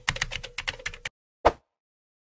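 Keyboard typing sound effect: a fast run of keystroke clicks, about a dozen a second, that stops about a second in, then one louder single keystroke.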